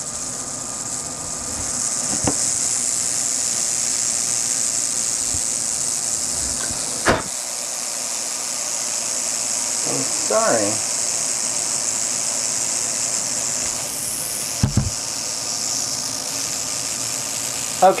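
Southwestern speckled rattlesnake (Crotalus pyrrhus) rattling its tail in a steady, high-pitched buzz, a defensive warning at being handled. A few brief sharp clicks sound over it.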